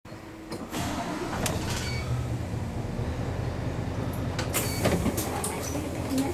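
City bus diesel engine idling at a stop, heard from inside the cabin as a steady low hum, with several sharp clicks and short hisses, the loudest about four and a half to five seconds in.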